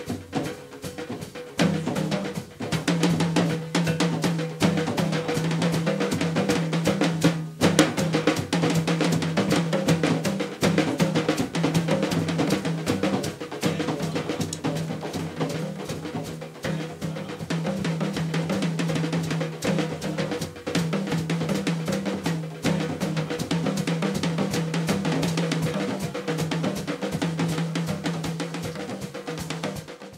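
Drum kit played live at a fast, dense pace, with bass drum, snare, tom and cymbal strokes packed closely together. The playing fades out at the very end.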